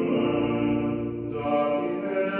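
Voices singing liturgical chant in long, held notes, with a new note starting about a second and a half in.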